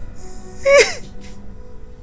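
A woman's short, sharp, breathy vocal outburst with a falling pitch, a little under a second in, over steady background music.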